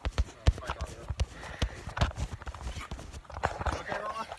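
Handling noise from a phone being moved about: irregular light knocks and thumps, several a second.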